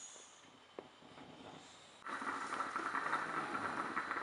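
Stainless-steel stovetop moka pot on the burner, brewing with a steady hiss that starts suddenly about halfway through as the coffee comes up; before that only faint room sound and a single click.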